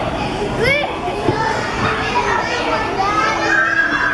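Many young children playing and calling out at once in a large indoor play hall, with a high squeal less than a second in and a couple of short knocks.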